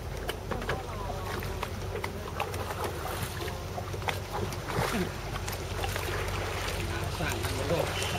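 A river boat's engine running with a low, steady hum, while people talk in the background.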